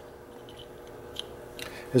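A few faint clicks from an A-1 Security Herty Gerty tubular key cutter as a brass tubular key blank is turned to the next indexing position, over a steady low hum.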